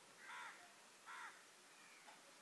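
Two faint caws from a crow, one shortly after the start and another about a second later.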